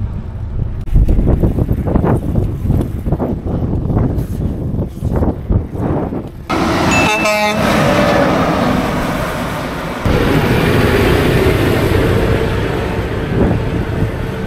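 Wind and road noise while riding along a highway shoulder, then a short truck horn blast about halfway through, one of several honks at the cyclists. Heavy trucks then pass close by with a steady roar of engines and tyres.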